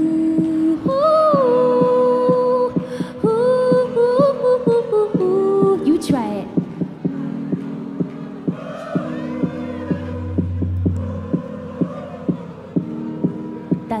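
A woman sings a short melodic hook over a steady house beat, with a kick drum at about two beats a second and a held synth chord. In the second half the crowd sings the hook back, more faintly and less clearly.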